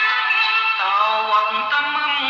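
Khmer popular song: an instrumental passage, then a male voice comes in about a second in, singing the opening of the chorus over the band.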